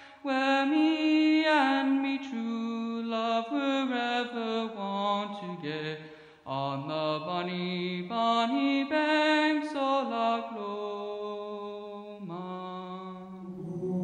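A young male soloist singing into a microphone, a single melodic line moving from note to note, with a brief break for breath about six seconds in.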